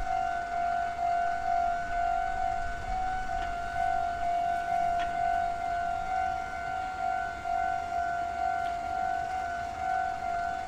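Japanese railway level-crossing alarm ringing at a Meitetsu crossing: a steady electronic tone repeating in even pulses while the red signals flash, warning that a train is coming.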